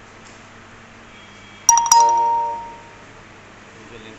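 A bell-like chime: two quick strikes about a fifth of a second apart, each ringing out and fading over about a second.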